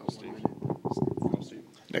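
Quiet, indistinct talking or whispering, with clearer speech starting near the end.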